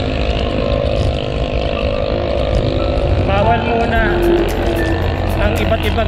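Wind rumbling on the microphone of a handlebar-mounted camera on a moving road bike, with passing motor traffic droning in the first half. A voice comes in about three seconds in.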